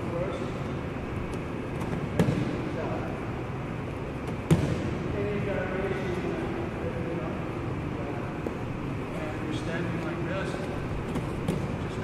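Two sharp thuds about two seconds and four and a half seconds in, the second the louder, echoing in a large gym hall over low voices.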